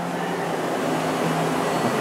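Steady hum and hiss of shop air-handling equipment running, with faint music underneath.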